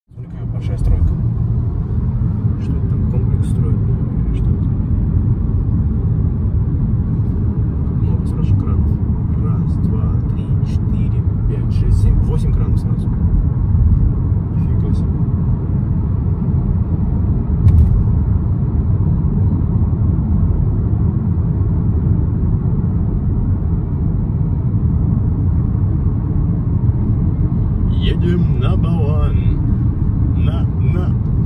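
Steady low road rumble from a moving car in city traffic: tyre and engine noise, loud and even throughout. A voice is heard briefly near the end.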